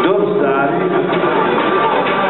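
Loud music playing, with a voice over it.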